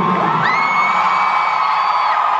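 Concert crowd in a large arena cheering and screaming, with one high scream rising about half a second in and held for about a second and a half.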